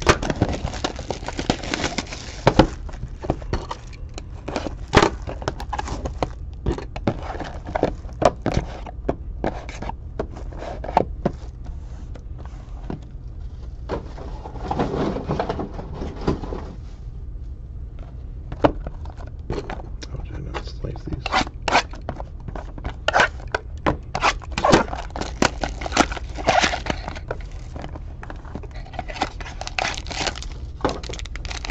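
Cardboard trading-card boxes being handled and stacked on a table: scattered taps, knocks and scrapes over a steady low hum. Near the end a box is torn open, with foil packs crinkling.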